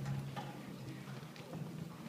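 Hall room tone: a low steady hum with a few scattered light knocks and clicks, about one every second.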